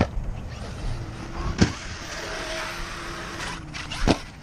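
1/5-scale ARRMA Kraton 8S RC monster truck with a Hobbywing 5687 brushless motor driving over dirt some way off, with a faint steady motor whine in the middle of the stretch. Two sharp knocks, one at the start and one about a second and a half in.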